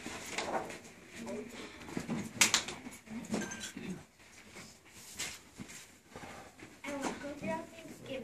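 Quiet, scattered children's voices murmuring, with a few sharp rustles or knocks, the loudest about two and a half seconds in.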